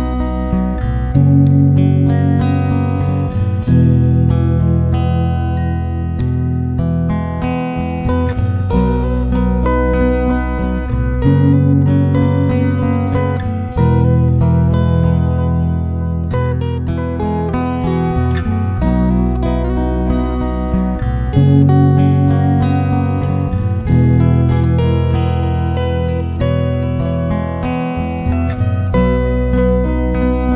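Instrumental background music led by acoustic guitar, with a bass line that changes every couple of seconds.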